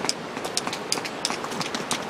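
Small rock hammer tapping and chipping at loose shale: a quick, irregular series of sharp clicks, several a second, over a steady hiss.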